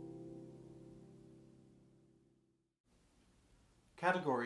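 Lever harp's final chord of a hymn phrase left ringing and slowly fading away to near silence over about two and a half seconds. The sound then cuts off abruptly, leaving only faint room tone.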